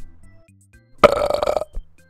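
A loud belch about a second in, lasting well under a second, over quiet background music.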